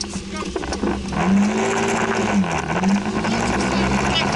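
Scooter engine accelerating, its pitch rising about a second in, dropping briefly around two and a half seconds as the throttle eases, then climbing again, over a steady rush of wind and wet-road noise.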